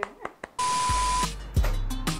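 An edited-in sound effect: a half-second burst of hiss with a steady beep in it, cut off sharply. About a second and a half in, background music with a strong beat starts.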